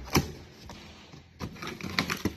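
Cardboard box being opened: a knife slitting the packing tape and the flaps being pulled apart. There are a few sharp cardboard cracks, the loudest just after the start, with light scraping between them.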